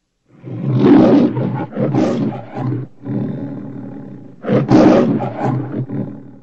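The MGM lion logo's roar: a big cat roaring loudly just after the start, trailing off into a lower growl, then a second loud roar about four and a half seconds in.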